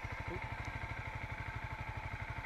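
Motorcycle engine idling steadily, with an even, rapid low pulse.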